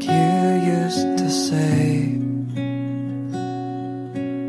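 Background music: a gentle song on strummed acoustic guitar.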